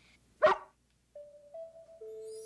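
A rough collie gives a single short bark about half a second in. Soft held music notes begin about a second later.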